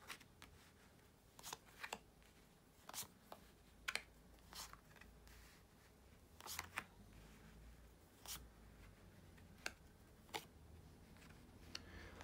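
Tarot cards being dealt one at a time onto a terry towel: a dozen or so faint, short clicks and slides at irregular intervals over quiet room tone.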